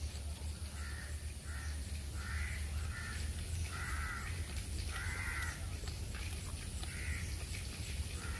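Crows cawing repeatedly: about seven short caws at uneven intervals, one or two at a time, over a steady low hum.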